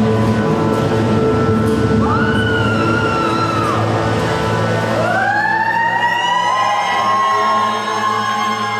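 Background music for a pole dance routine: a steady low drone with siren-like gliding tones that swell and arch over it, once about two seconds in and again, in several overlapping layers, from about five seconds in.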